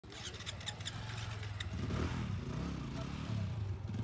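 Motorcycle engines running, with an engine note that rises and falls about halfway through.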